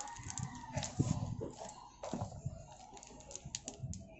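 Clear plastic bag crinkling and clicking in short bursts as it is handled. Chickens cluck in the background.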